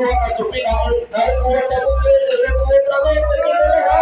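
Male singer's voice through a microphone, holding one long, wavering note from about a second in, over a backing track with a heavy bass beat of about two pulses a second.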